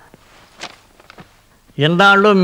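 A few soft footsteps and shuffles as a man moves across and sits down, then a man starts speaking near the end.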